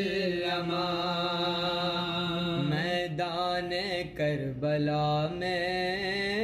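A man's voice chanting a religious recitation in long, held melodic phrases, with a brief break about four seconds in.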